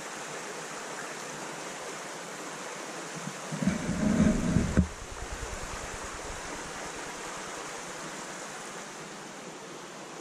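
A steady rushing hiss of outdoor background noise, broken about three and a half seconds in by a second-long low rumble of wind buffeting the microphone that cuts off suddenly.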